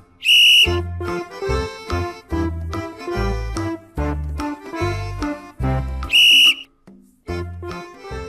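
Two short, high-pitched blasts of a sports whistle about six seconds apart, over upbeat children's backing music with a steady beat. Each blast signals the next pose in the imitation game.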